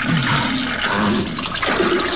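Slapstick film sound effects of explosive diarrhea into a toilet: a continuous loud, wet splattering and gushing noise with low rasping sounds underneath.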